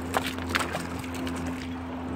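Shallow river water splashing briefly a few times in the first second as a steelhead is released by hand at the bank, then a steady low background.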